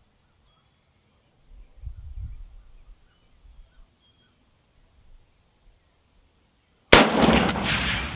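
A single shot from a USMC MC1 sniper rifle, an M1 Garand in .30-06, about seven seconds in: a sharp crack whose echo rolls on across the range, with a short metallic ring just after it. Before the shot there is only a faint low rumble around two seconds in.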